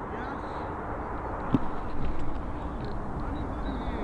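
Outdoor ambience: a steady low rumble with faint distant voices, and a single short click about one and a half seconds in.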